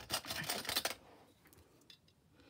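Handling noise from picking up a large metal binder clip: a short run of clatter and clicks in the first second, then one sharp click near the end.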